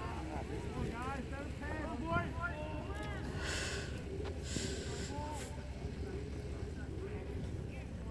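Distant, indistinct shouting voices of players and spectators, with wind rumbling low on the microphone and two short hissing noises around the middle.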